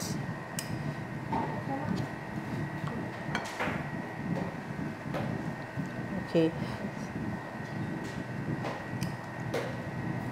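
Light taps and scrapes of a utensil against a bowl as cooked rice is pressed in for plating, over a steady low hum.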